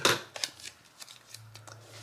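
Contact paper being cut and handled: a quick run of sharp crackling snips in the first second, then faint rustling over a low steady hum.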